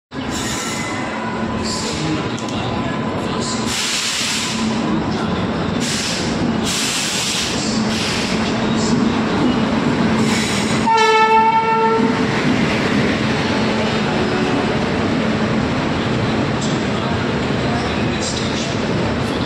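Indian Railways WAP-7 electric locomotive rolling into the platform at the head of passenger coaches: steady wheel rumble with a low hum and several bursts of hiss. About eleven seconds in comes one horn blast about a second long, and then the coaches roll past.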